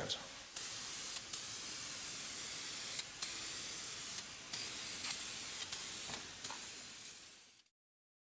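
DupliColor aerosol can spraying acrylic lacquer clear coat onto a painted alloy wheel, a steady hiss that fades out near the end.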